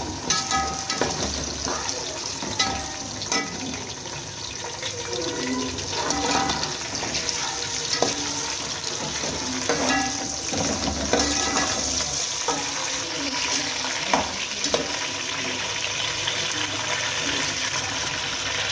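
Chicken pieces and sliced onions sizzling in hot oil in a large pot, with a metal spatula knocking and scraping against the pot now and then as they are stirred.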